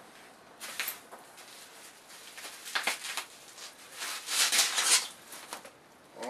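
Plastic packing wrap crinkling and rustling in several short bursts as it is pulled out of a shipping box, loudest and longest about four to five seconds in.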